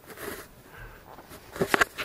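Footsteps and camera handling of someone walking on a sandy canyon floor: a faint rustle, then a quick cluster of sharp knocks just before the end.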